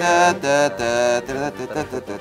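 A man's voice chanting a sing-song tune in held notes that step up and down, the kind sung while a ladder game's path is traced.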